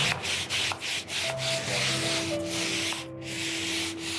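Stiff hand scrubbing brush worked back and forth over wet carpet, a rasping scrub in quick repeated strokes.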